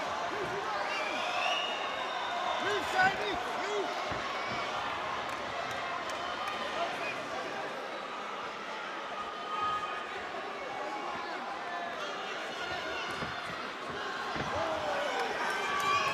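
Fight-night crowd in a hall, with shouting and calls from the spectators and corners, and a few sharp thuds from the ring. The loudest thud comes about three seconds in.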